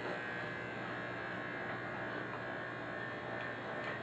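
Corded electric hair clippers with a number two guard running with a steady buzz while blending hair on a mannequin head.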